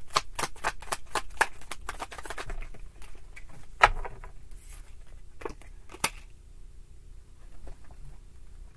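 A tarot deck being shuffled by hand: a quick, even run of card clicks, about four a second, for the first two and a half seconds. After that come a few separate sharp clicks, with the loudest near four seconds and another near six.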